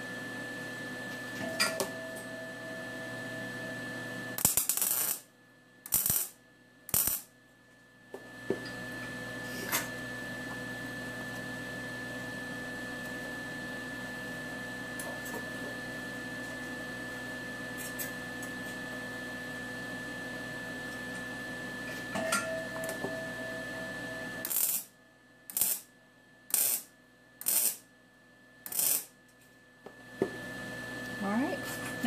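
MIG welder laying short tack welds on steel silverware: three brief bursts about four to seven seconds in, then a run of about six more in quick succession near the end.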